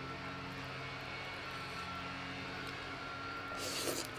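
A steady low hum with a faint high tone runs underneath throughout. About three and a half seconds in comes a short slurp as khanom jeen rice noodles are sucked into the mouth.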